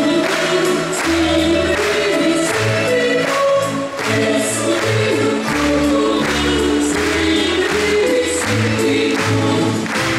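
Music: a choir singing over instrumental accompaniment with a steady beat.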